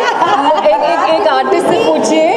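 Overlapping voices: several people talking and chattering at once.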